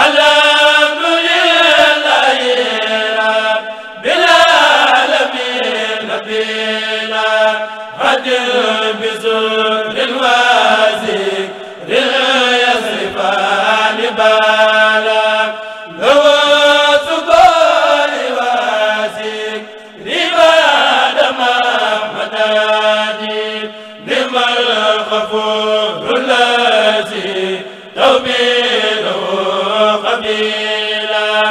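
A Mouride kurel, a choir of men, chanting Arabic religious verse (khassida) unaccompanied through microphones, in phrases about four seconds long with short breaks for breath between.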